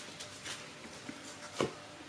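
Quiet room with faint handling of an oracle card being drawn, and a single soft tap about one and a half seconds in.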